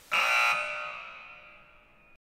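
A buzzer sound effect sounds once, loud at first and then fading away, marking the quiz answer as wrong.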